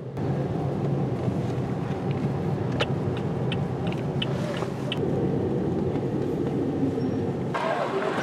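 Steady engine and road noise inside the cabin of a moving Toyota car, with a few light clicks in the middle. It cuts off abruptly near the end to a different, more open background.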